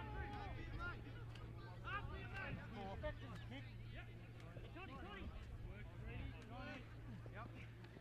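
Scattered distant shouts and calls from rugby league players and sideline spectators, many voices overlapping, over a low steady rumble.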